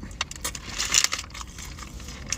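Paper burger wrapper rustling and crinkling in the hands, with a few sharp crackles; the rustle is loudest about a second in.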